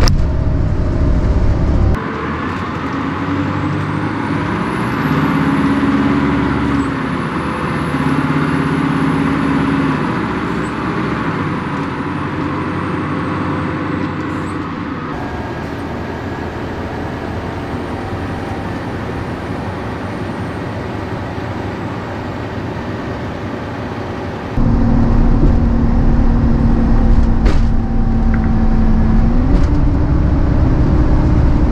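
Detroit Diesel Series 50 four-cylinder diesel engine of an Orion V transit bus, heard in several short recordings spliced together. The engine note steps up and down in pitch as the bus drives, and near the end a steady note climbs as it accelerates.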